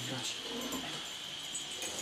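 A lull in conversation: a faint low voice murmurs briefly near the start over a steady background hiss.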